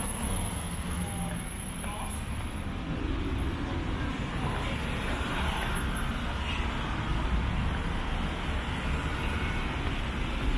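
Road traffic at night: a steady low rumble of car and bus engines and tyres passing on the road beside the pavement.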